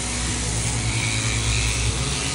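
Sheep-shearing handpiece on a flexible drive shaft running with a steady hum, its cutter clipping through the wool of a ram.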